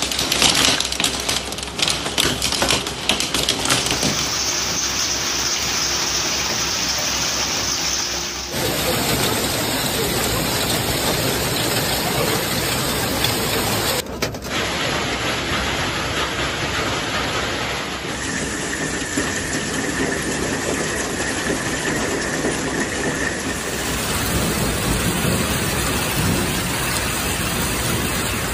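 Heavy rain and hail falling in a steady, dense hiss, with many sharp pattering impacts in the first few seconds. The sound changes abruptly every few seconds as one storm recording cuts to the next.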